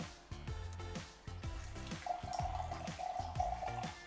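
Background music, with liquid from a small glass bottle poured into a glass, trickling and splashing from about halfway in.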